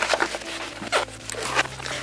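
Zip being pulled open around a fabric storage folder, a run of short rasping noises with rustling of the fabric as the folder is opened.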